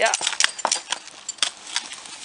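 A Percheron draft mare's hooves striking asphalt as she walks, a handful of irregular sharp steps.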